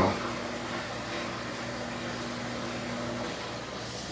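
A steady low hum with a few constant tones in it. One of the tones cuts off about three seconds in.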